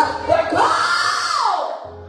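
A woman's voice through a microphone in one long drawn-out cry that rises in pitch, holds, and falls away about a second and a half in.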